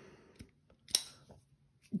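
Kizer Tangram Vector button-lock folding knife being worked open and shut, giving a few small clicks of blade and lock; the sharpest comes about a second in.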